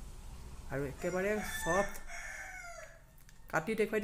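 A long, pitched animal call that starts under a second in and lasts about two seconds, ending in a falling glide.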